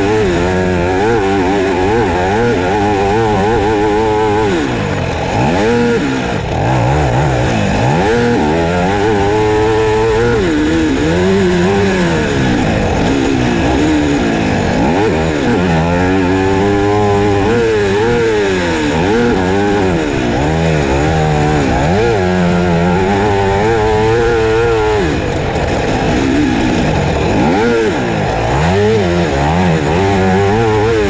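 Husqvarna FC250 four-stroke single-cylinder motocross engine, heard on board from a GoPro as the bike is ridden hard around a track. Its pitch climbs and drops over and over as the throttle is opened and closed.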